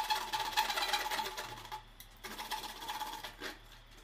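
Hand-held hacksaw blade cutting the white plastic frame of a concealed flush cistern, trimming its projecting edge flush with the wall tiles: rapid back-and-forth rasping strokes that stop briefly about halfway through, then go on more faintly.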